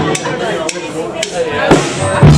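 Drumsticks clicked together four times, evenly about half a second apart: a drummer's count-in, with the band coming in right after.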